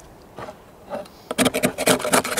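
Back of a knife blade scraping propolis off a wooden beehive frame into a tray. It is fairly quiet at first, then from about a second and a half in comes a quick run of rasping scrapes.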